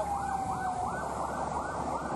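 Fire truck siren sounding a fast, repeating rise-and-fall yelp, about three sweeps a second, with a steady tone that fades out within the first second.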